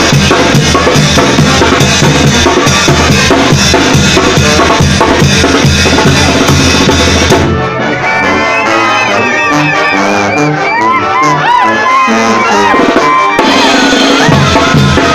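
A Mexican banda brass band playing live, loud and full, with sousaphones, trumpets, trombones and drums. About seven and a half seconds in, the drums and low brass drop out, leaving a few higher instruments playing a wavering melody. The full band comes back in near the end.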